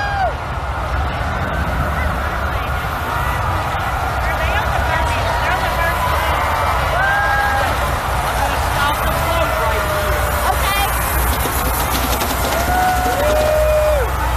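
Crowd din with several drawn-out 'woo' whoops and cheers, the first right at the start, over music.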